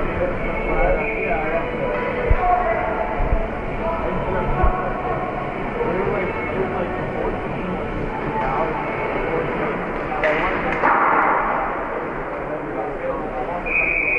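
Many voices talking at once in an ice rink's stands, over faint music.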